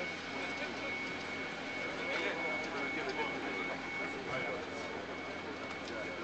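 Indistinct voices over a steady mechanical hum with a constant high-pitched whine, the background of an airfield apron.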